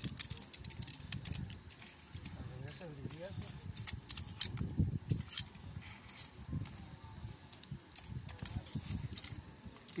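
Long metal tongs clicking and scraping against clam shells and gravel as clams are set one by one into a bed of hot gravel: a scatter of light, irregular clicks.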